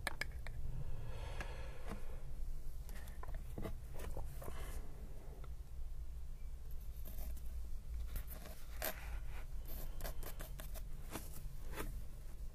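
Close-up handling of a dip pen and a bottle of ink: soft scrapes and rustles in the first few seconds, then a run of light clicks and taps through the second half.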